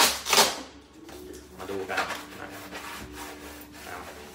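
Hands rubbing and scraping against a styrofoam box: two short loud scrapes right at the start.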